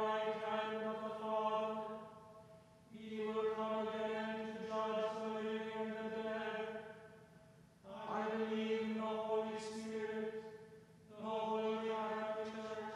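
A man's voice intoning liturgical chant on a single held reciting note, in phrases a few seconds long with short pauses between.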